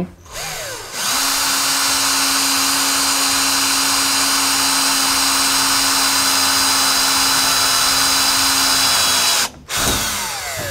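Cordless drill with a 3 mm bit drilling a pilot hole through the sheet-steel side panel of a VW Transporter T6 van, running at a steady pitch. It gets going about a second in, stops just before the end and briefly runs again.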